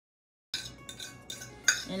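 A utensil clinking and scraping against a ceramic plate as mashed banana is pushed off into a bowl of flour: several sharp clinks, starting about half a second in.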